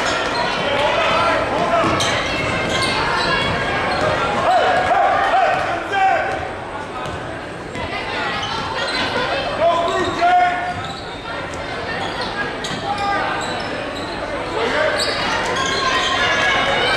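Basketball dribbled and bouncing on a hardwood gym floor during play, with players' and spectators' voices and shouts echoing in the gym throughout.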